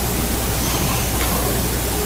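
Steady even hiss with a low hum underneath, with no distinct events. It is the recording's background noise, which swells up gradually once the voice stops.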